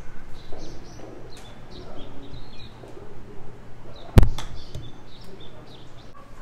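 Small birds chirping in short calls throughout, and a single sharp crack about four seconds in, the loudest sound, of a golf club striking a ball off a driving-range hitting mat on a chip shot.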